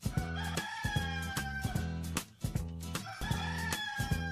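A rooster crowing twice, two long calls about three seconds apart, over background music with a steady beat.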